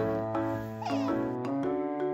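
Gentle piano background music with sustained notes. About a second in comes a short, high squeaky call that falls in pitch, from an Asian small-clawed otter.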